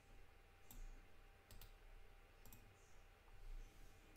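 A few faint computer mouse clicks, about a second apart, over near silence.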